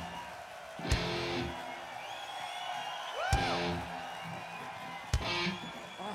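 Live rock band playing three short electric-guitar chord stabs, each hit together with a drum strike and left to ring out, about two seconds apart, with crowd noise in between.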